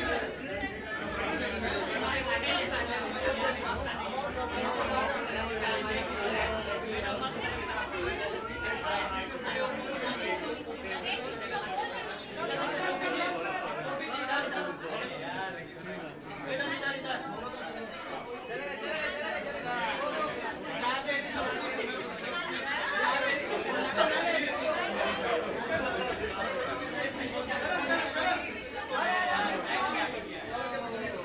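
Many people talking over one another: busy, overlapping chatter with no single voice standing out.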